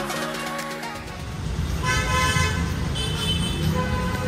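Road traffic rumble with short vehicle horn toots, the clearest about two seconds in and a couple more near the end.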